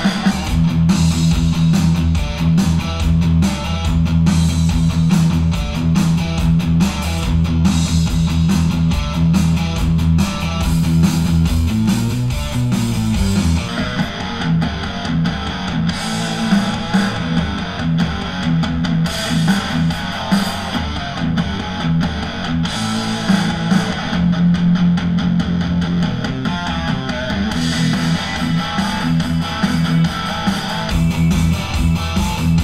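A rock track with electric guitars and bass played back through an Auratone 5C Super Sound Cube, a small single-driver mid-range reference monitor. The sound thins out in the highs and deep bass about fourteen seconds in.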